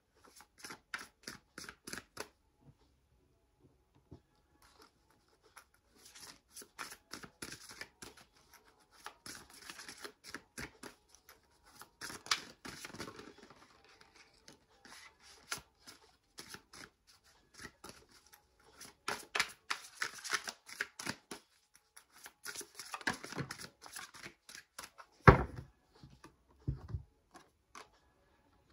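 A deck of oracle cards shuffled by hand in several runs of quick card flicks, with short pauses between them. A single sharp thump comes near the end.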